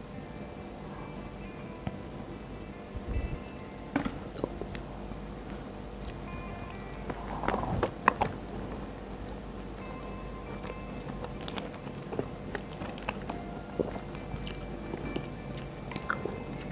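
Soft background music with close-miked eating sounds: a Burger King Whopper being handled and bitten into, then chewed, with crisp crackles and clicks. The loudest cluster comes about eight seconds in.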